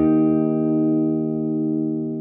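Electric guitar played through a Blackstar LT Drive overdrive pedal: a single chord held and ringing out, slowly fading.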